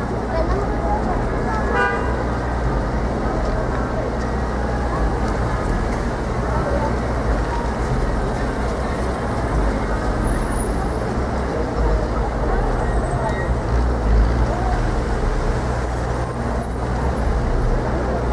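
Busy city intersection: cars and SUVs driving through over a steady low traffic rumble, with passers-by talking and a brief car-horn toot about two seconds in.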